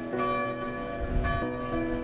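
Tower bells ringing in sequence, each bell struck in turn about every two-thirds of a second and left to hum on, with a brief low rumble about a second in.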